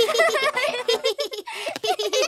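Two young cartoon children's voices laughing together in quick, repeated giggles.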